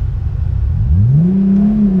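Toyota Supra engine heard from inside the cabin. It rumbles low, then about a second in its pitch climbs quickly as the car accelerates and settles into a steady drone.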